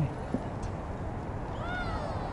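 Steady outdoor background noise, with a short high-pitched wavering call, cat-like, beginning about three quarters of the way through.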